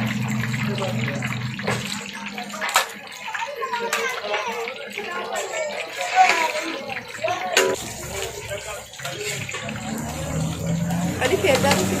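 Fish pieces coated in gram-flour batter deep-frying in a large wide karahi of hot oil, sizzling and bubbling. A metal slotted skimmer clinks against the pan twice, about three seconds in and again past the middle.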